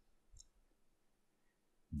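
Near silence with one faint click about half a second in.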